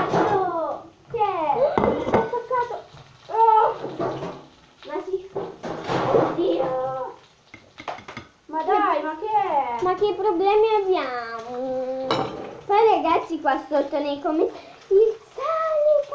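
Young girls' voices through most of the stretch, with a metal spatula scraping and knocking against a frying pan as a fried egg is lifted out and put on a plate.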